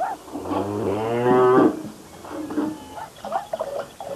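A cow mooing once, a long low call of about a second and a half. A few faint knocks follow.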